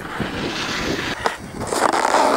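Snowboard edge scraping and hissing across snow, in two swells, the second and louder one about a second and a half in.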